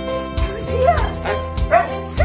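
Excited Alaskan Malamutes vocalizing: several short yips and whines that rise and fall in pitch. Background music with a steady beat plays under them.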